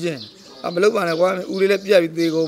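Only a man's speech: he is talking in Burmese, with a brief pause about a third of a second in.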